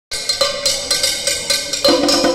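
Live hand percussion: a metal bell strikes a quick repeating rhythmic pattern, and conga drums come in just before the end.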